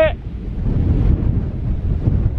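Wind buffeting the microphone, an uneven, gusty low rumble.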